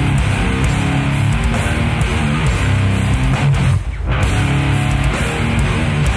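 Live death metal band playing: distorted electric guitar riffing over bass and drums. About four seconds in the band stops for a split second, then crashes back in.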